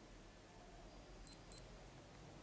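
Two short, high-pitched chirps about a quarter second apart, over quiet room tone.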